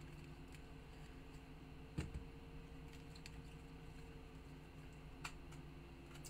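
Faint steady room hum with a few scattered light clicks and taps, the sharpest one about two seconds in.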